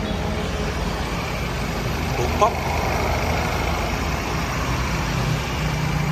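Ford Ranger Raptor's 2.0-litre bi-turbo diesel idling steadily.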